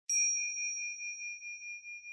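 A small bell struck once, its single high ring carrying on and slowly fading with a wavering pulse about four times a second.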